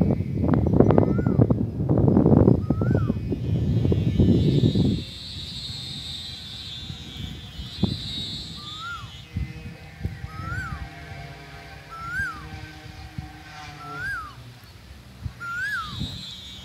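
Wind buffeting the microphone with a loud low rumble for about the first five seconds, then dying away. Through it and after, a bird repeats a short whistled note that rises and then drops, every second or two.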